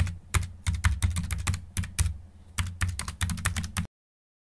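Typing on a computer keyboard: a quick, irregular run of keystrokes with a short pause in the middle, stopping abruptly near the end.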